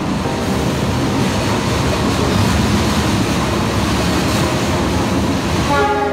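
Argo Wilis executive passenger train pulling into the station alongside the platform: the diesel locomotive and coaches rolling past close by, a steady dense noise of wheels on the rails.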